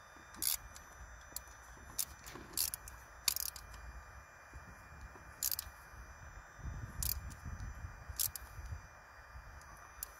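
Socket ratchet clicking in short bursts, about seven in all, as the compression tester's connector is tightened into a cylinder of the 1.8 TDCi diesel engine. A faint low rumble comes in about two-thirds of the way through.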